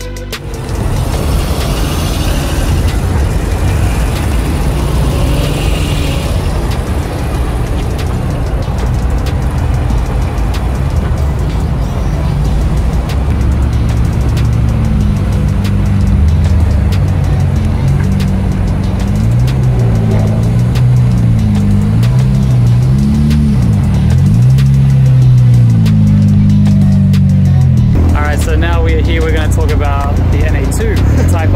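Honda NSX V6 engine running at low speed as the car is manoeuvred into place. Over the second half its pitch rises and falls repeatedly with small throttle changes.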